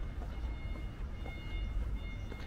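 Steady low city rumble with a thin, steady high-pitched whine over it, and faint footsteps on the paved canal towpath.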